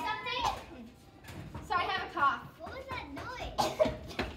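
Children's voices talking in short, indistinct bursts, with no words clear enough to make out.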